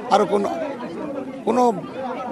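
Only speech: a man talking, with chatter from other voices behind him.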